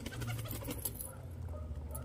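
Domestic pigeons cooing low, with a few light clicks of beaks pecking grain on concrete.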